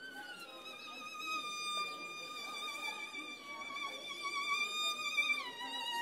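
A single violin playing a slow melody in long held notes with vibrato, gliding down to a lower note about half a second in and stepping down again near the end.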